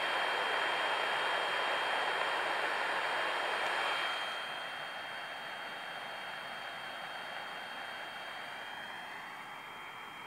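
Shortwave receiver's speaker hissing with band noise on the 8310 kHz sideband channel between amateur transmissions, with a steady high whistle over it. The hiss drops in level about four seconds in.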